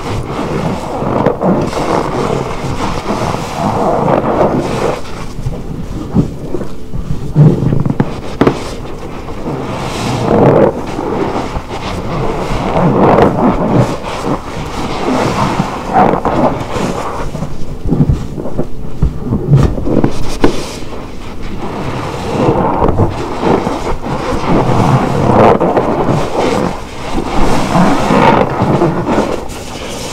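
A foam-soaked car-wash sponge squeezed and kneaded by gloved hands in a basin of sudsy detergent water: repeated wet squelching and sloshing of thick lather, swelling and easing with each squeeze.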